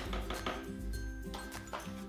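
Soft background music, with a few light knocks of a plastic scoop against a blender jar as powder is tipped in.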